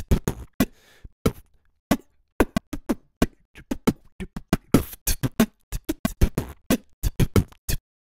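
Beatbox recording played back after being sliced at its beat triggers and conformed to the session tempo, quantized to sixteenth notes: a quick, even run of sharp vocal percussion hits that stops just before the end.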